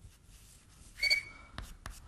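Chalk writing on a blackboard. About a second in it gives a short, high squeak, followed by a couple of light taps as the strokes go on.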